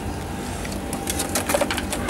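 Steady low mechanical hum, with a cluster of light clicks and knocks from handling about a second and a half in.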